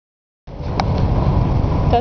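Steady low rumble of a car travelling at highway speed, heard from inside the cabin, starting abruptly about half a second in, with a single sharp click soon after.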